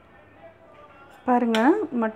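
A woman speaking, starting a little over a second in after a short quiet stretch of faint room noise.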